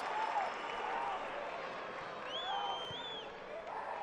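Stadium crowd noise, a steady murmur with scattered distant shouts from fans. A high-pitched call lasting about a second sounds near the middle.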